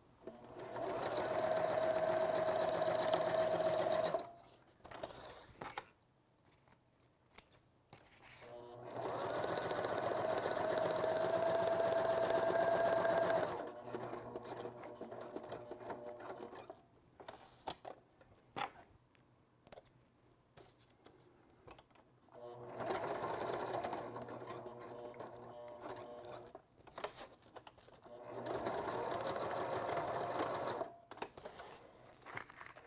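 Electric sewing machine stitching fabric in four runs of about three to five seconds each, its motor running at a steady pitch and stopping between runs. Short clicks and handling noises fill the pauses.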